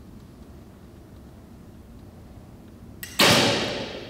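Olympic recurve bow shot about three seconds in: a brief click, then the string is released and the arrow leaves the bow. The sharp sound fades away over most of a second.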